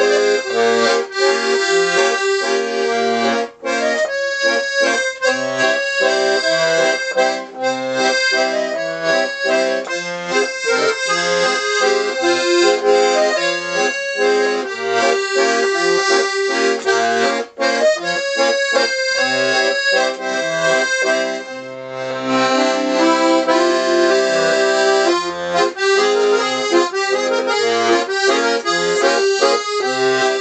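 A Hohner Student VM piano accordion playing a tune, its melody over a regular left-hand bass-and-chord accompaniment, with two brief breaks in the sound. The instrument is freshly refurbished, with new valves and wax and tuned to concert pitch, giving a bright sound.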